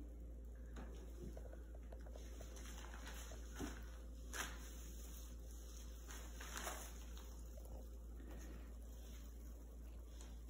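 Faint steady whir of a small battery-powered DC motor turning a cardboard spin-art wheel, fading out near the end, with a few soft knocks as markers touch the wheel.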